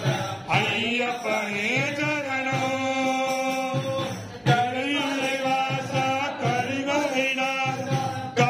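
Tamil devotional song to Kulathur Bala (Ayyappa) sung in a chanting style over a steady low beat, with a brief break about four seconds in before the singing picks up again.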